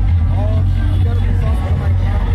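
A man speaking, over a loud, steady low rumble of background noise.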